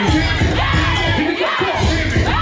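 Loud dance music with a pulsing bass beat, and a crowd of people shouting over it.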